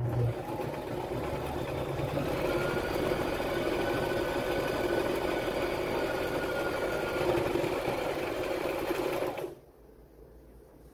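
Brother LX3817 electric sewing machine running steadily as it stitches through cloth, motor and needle mechanism whirring at an even speed. It stops suddenly about half a second before the end.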